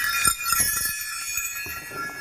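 A leather strap of brass mule bells shaken, jingling and ringing, with a few fresh jingles in the first second before the ringing slowly dies away.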